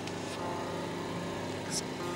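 A steady mechanical hum holding several fixed tones, with a short hiss near the end.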